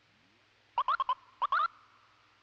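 R2-D2-style robot beeps and warbles: two quick runs of short rising chirps, about four in the first and three in the second, over a faint steady hum.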